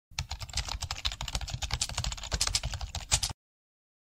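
Fast computer-keyboard typing, a quick run of keystroke clicks that cuts off abruptly a little over three seconds in.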